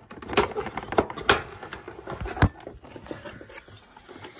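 Hard plastic clicks and knocks as the aged air filter housing is wiggled and pried loose by hand. The knocks are irregular, with the loudest and sharpest about two and a half seconds in.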